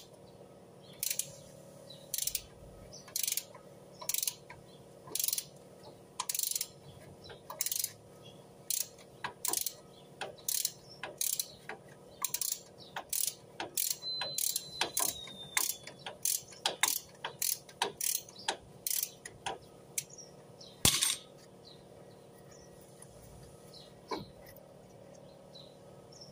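Ratchet wrench clicking in short strokes while turning a disc brake caliper bolt, about one stroke a second at first, then quicker at about two a second, ending with a louder click near the end.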